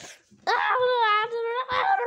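A loud, high-pitched wail starting about half a second in, held for over a second with a wavering pitch, then breaking into a second cry near the end.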